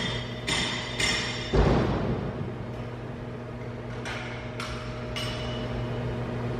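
A cloth towel rubbing over a grinder's metal spindle nose taper in quick wiping strokes, about two a second, through the first second or so. A dull knock follows, then a few lighter handling rubs, over a steady low machine hum.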